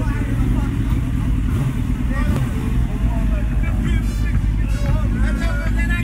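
Sport motorcycle engines running in the street in a steady low rumble, with a crowd of people talking and calling out over it.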